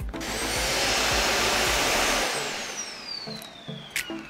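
Samsung All-in-one Clean Station auto-emptying a docked Bespoke Jet stick vacuum's dust bin. A rush of suction air comes on at once, swells, then fades over about three seconds, while a high motor whine falls in pitch as it spins down.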